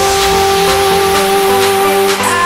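Electronic dance remix in a drumless breakdown: one synth note held steady over a hissing noise wash.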